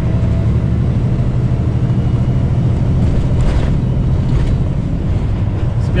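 Semi truck's diesel engine and tyres droning steadily inside the cab while cruising on the highway.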